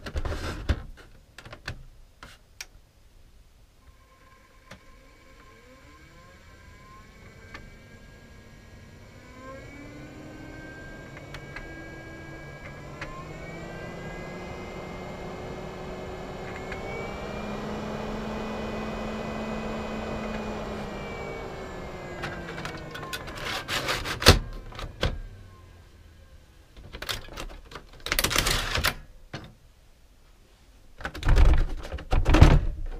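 Motorhome roof-vent fan motor running: a whine that steps up in pitch about three times as the speed is raised, is loudest in the middle, then slows and winds down. Plastic clicks come at the start, and a few sharp knocks from the vent's handle and housing come near the end.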